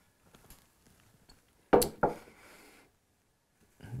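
Two sharp knocks a fraction of a second apart, with a short faint scrape after them, as something hard is set down on a countertop during setup. Faint handling ticks come before.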